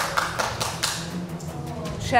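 One person clapping their hands, a string of irregular claps that thin out after about a second.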